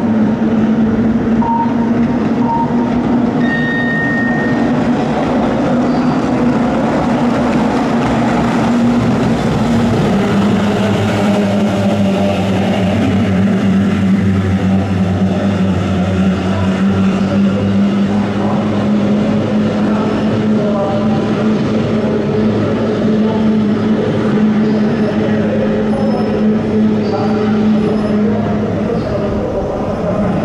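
Racing outboard motors on the kyotei boats running at full throttle as the field races past, several engines blending into one loud, steady drone that shifts a little in pitch. A brief high tone sounds about four seconds in.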